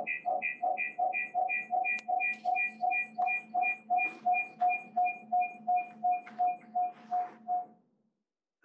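Glitching audio playback from the presentation laptop: one short sound repeats in an even stutter about three times a second, then cuts off when the sound is muted just before the end.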